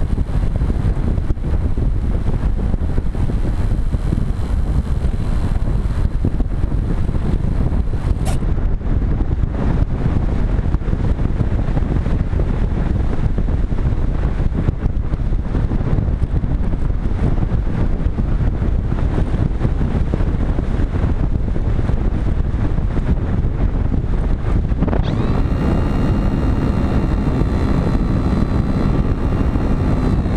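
Steady wind noise rushing over the camera on a Multiplex Cularis electric model glider in flight. Near the end a high, even whine from the glider's electric motor starts with a quick rise, holds steady for about five seconds and then winds down.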